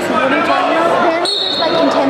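Spectators' voices in a gymnasium, several people talking and calling out at once with hall echo, broken about a second in by a short high-pitched tone.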